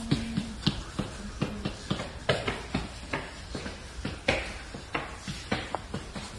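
An irregular string of light clicks and taps, about four a second, with no clear rhythm.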